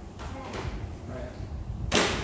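Faint voices, then one sharp, sudden hit near the end, much louder than the voices and with a brief trailing swish.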